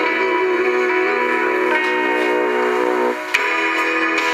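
A song playing on an FM car radio through the truck cabin's speakers, with sustained melodic notes; a brief drop and a sharp click come a little over three seconds in.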